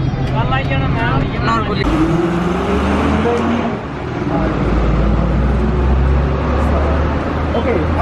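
Road traffic close by: an engine speeding up with a rising pitch about two seconds in, then a deep, loud engine rumble from a heavy vehicle.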